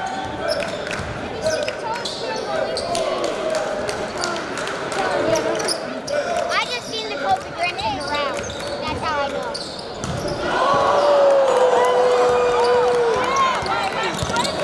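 Basketball dribbling on a hardwood gym floor, repeated bounces, with sneakers squeaking in short chirps around the middle and voices from the players and crowd in the background. About ten seconds in, a louder voice rises with one long held call.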